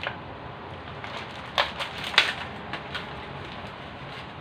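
A few sharp clicks from small objects being handled on a kitchen counter, the loudest about two seconds in, over a steady low background hiss.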